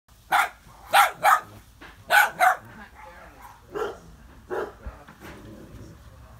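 Dog barking in play while dogs wrestle: five sharp barks in the first two and a half seconds, then two softer ones.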